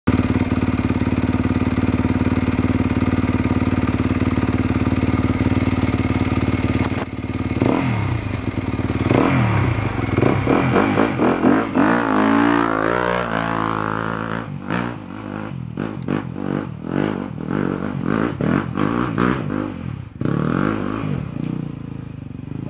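Trail motorcycle engines: a steady idle for about the first seven seconds, then an engine revving up and down as a bike pulls away close by. After that comes a run of sharp knocks and clatter.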